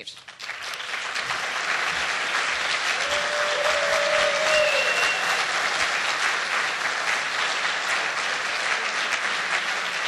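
Large seated audience applauding, building up within the first second and then holding steady.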